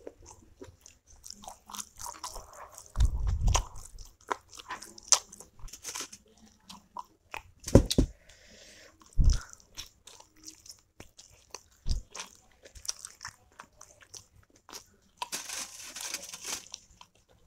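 Close-miked chewing and wet mouth sounds of a person eating steamed momos with chutney, many small clicks and smacks, broken by a few low thumps about three seconds in, near eight and nine seconds, and near twelve seconds.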